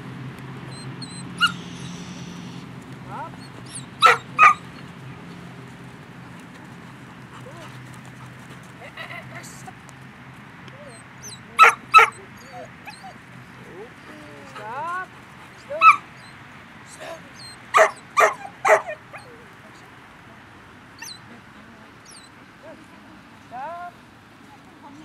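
A Rottweiler barking while working sheep: about nine short, sharp barks, several in quick pairs, around four seconds in, twelve seconds in, and a run of three near eighteen seconds, with faint whining glides in between.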